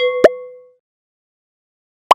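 Cartoon pop sound effects for an animated logo: two quick pops at the very start, the second with a short ringing tone that fades within about half a second.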